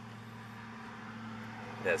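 A steady low hum with a faint hiss underneath, unchanging through the pause; a man's voice starts again right at the end.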